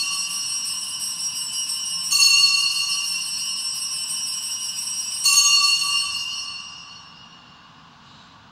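Altar bells rung at the elevation of the chalice: a bright, high ringing already sounding, rung again about two seconds in and again about five seconds in, then fading out.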